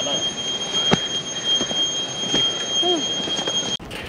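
A steady high-pitched whine with overtones that cuts off abruptly near the end, with a sharp click about a second in and a faint voice near three seconds.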